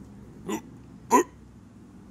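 Two short, hiccup-like vocal sounds from a child, about two-thirds of a second apart. The second is louder and rises in pitch.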